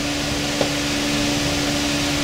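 Steady background machine noise: an even hiss with one constant low hum tone, and a faint click just after half a second in.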